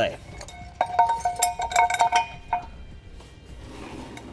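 Metal clinking and ringing as the spare-tire hoist's cable hook and retainer are worked free of the steel spare wheel: a run of light strikes, each leaving a short ringing tone, from about one second in until a little past halfway.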